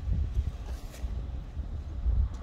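Low, uneven rumble of wind buffeting the microphone, with no other clear sound on top.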